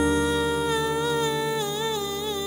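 A long hummed vocal note that wavers slightly, held over a sustained electric piano chord in a slow song intro.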